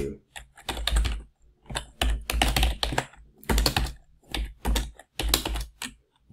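Typing on a computer keyboard: runs of quick key clicks, each with a soft low thump, broken by short pauses.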